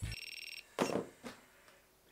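A short, high-pitched electronic beep lasting about half a second, several tones sounding together. It is followed a moment later by a brief soft noise.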